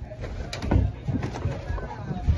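Handling noise from a phone microphone that is covered and moved about: irregular low rubbing thuds, with a soft murmuring voice.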